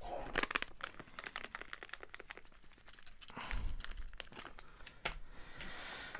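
Plastic seasoning packet crinkling and crackling as it is handled, in irregular clicks, while seasoning is added to the potatoes. A dull low bump about three and a half seconds in.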